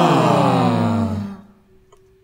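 A cappella vocal ensemble singing a downward glissando, several voices sliding down in pitch together, then breaking off about a second and a half in.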